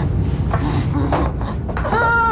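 A low, steady drone with a short muffled moan from a gagged woman about half a second in, and a soft knock or creak of movement.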